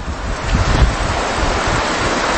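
Loud, steady rushing noise with a low rumble underneath, lasting about two and a half seconds.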